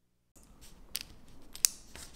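Small, sharp clicks of a miniature keyring mouse trap's steel wire and torsion-spring parts being handled by fingers, twice, the second the sharpest, over faint room noise that starts a moment in.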